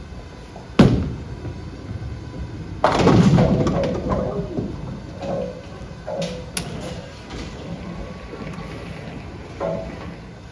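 Storm Absolute bowling ball landing on the wooden lane with a sharp thud just after release, then, about two seconds later, crashing into the pins, the loudest moment, with the clatter of pins dying away. Smaller scattered knocks of falling pins and the pinsetter follow.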